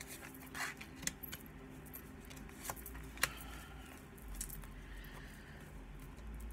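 Oracle cards being handled and laid down on a cloth-covered table: a few short, sharp clicks and light rustles of card stock, the sharpest a little past three seconds in, over a faint steady low hum.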